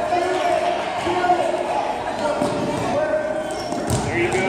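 A basketball bouncing on a hardwood gym floor, with one sharp bounce just before the end, over spectators' chatter.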